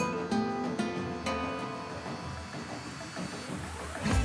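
Background music on acoustic guitar: a few plucked notes in the first second or so, then left ringing and fading away.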